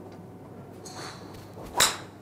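Titleist TSi2 3-wood striking a golf ball: a single sharp, short crack of the clubhead meeting the ball near the end.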